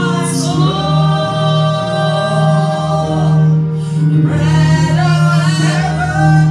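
A woman singing a gospel worship song into a microphone, holding long drawn-out notes, with a steady low note sustained underneath.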